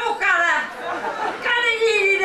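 Only speech: a performer speaking Norwegian dialogue from the stage.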